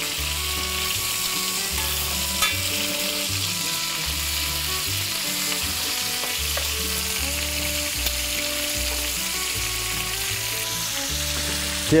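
Chicken drumsticks sizzling steadily as they fry in butter in a pan, turned over now and then with metal tongs.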